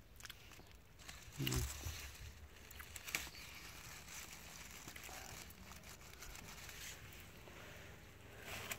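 Faint rustling of strawberry leaves and stems as a hand reaches in among the plants to pick a strawberry, with a sharp click about three seconds in.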